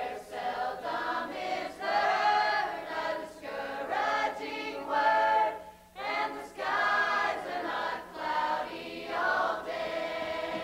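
A choir singing a song, phrase after phrase, with a brief break about six seconds in.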